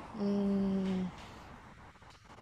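A woman's short hum, held level on one low note for about a second.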